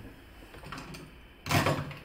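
Low room tone, then a short knock-and-rustle of handling about one and a half seconds in, as a pen-type marker is picked up.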